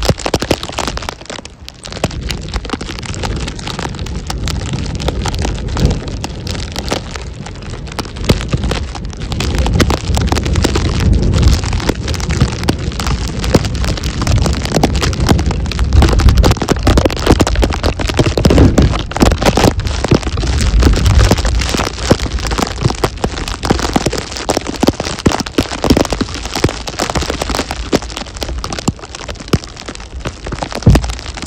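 Wind and falling snow on the microphone in a snowstorm: a dense, steady crackle over low rumbling gusts that grow louder in the middle.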